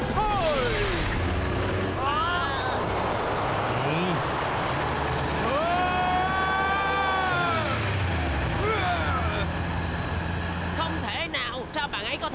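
Cartoon sports-car engine sound effect at full throttle: a steady low rumble with rushing road noise, and several revving whines that rise and fall, the longest rising, holding and dropping away near the middle. The car is running flat out on a swapped-in engine.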